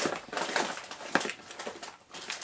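Rummaging through small items by hand: rustling and light clicks of objects being moved and handled, with one sharper click about a second in.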